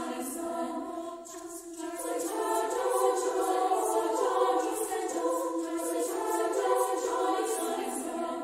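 Women's choir in three treble parts (SSA) singing, holding sustained chords; it softens about a second in, then swells into a fuller, louder chord at about two seconds.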